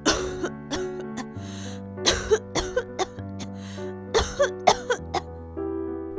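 A person coughing repeatedly, a dozen or so short coughs in quick fits, over soft sustained background music.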